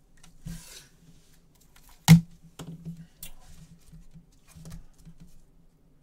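Trading cards and packs being handled by gloved hands on a table: a soft rustle in the first second, then one sharp tap about two seconds in, the loudest sound, and a few lighter clicks, over a faint low hum.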